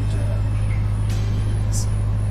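Steady low hum of a running engine, even and unchanging throughout.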